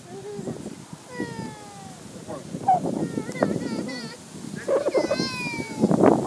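Three drawn-out, meow-like vocal calls with sliding, wavering pitch: the first falls slowly, the later ones waver up and down.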